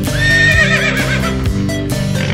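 A horse whinnies once, a long quavering call, over background music with a steady beat.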